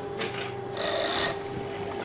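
Fur sewing machines running with a steady hum, and a louder rasping burst of stitching about a second in.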